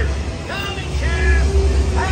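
Steady low rumble of a ride vehicle travelling along its track, louder toward the middle, with short snatches of a voice over it.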